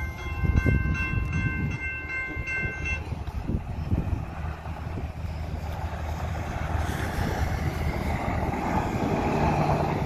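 Grade-crossing warning bell ringing steadily, then cutting off about three seconds in. Underneath, a low rumble with irregular thumps from the passing freight train on the rails, with a growing rushing noise near the end.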